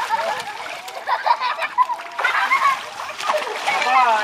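Water splashing in an above-ground pool as people thrash and throw water, in repeated uneven surges, with voices calling out over it.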